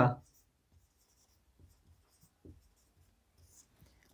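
Marker pen writing on a whiteboard: faint, scratchy strokes in a few short spells.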